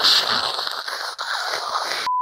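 A harsh, crackling hiss like radio static that cuts in suddenly and holds steady.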